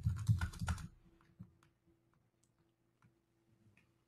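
Computer keyboard typing: a quick run of keystrokes in the first second, then a few faint, scattered key clicks.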